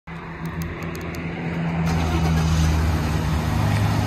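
Ford F-150 pickup's engine running just after a remote start: a steady low hum whose pitch shifts slightly about two seconds in. A few faint high clicks come in the first second.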